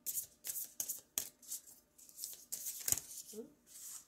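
Oracle cards being shuffled by hand: a string of short, papery swishes with pauses between them, and a soft knock about three seconds in.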